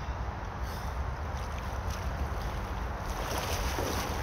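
Shallow river water running and rippling, with wind rumbling on the microphone. About three seconds in, water splashing grows louder and brighter as a bather moves in the stream.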